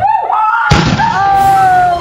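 A girl's voice yelling, then a heavy thud about two-thirds of a second in as a player is tackled to the floor. After the thud comes a long, high scream that falls slightly in pitch.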